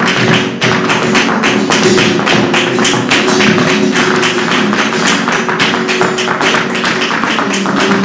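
Flamenco guitar playing under a fast run of sharp percussive strikes, several a second: the dancer's heel-and-toe footwork on the wooden stage.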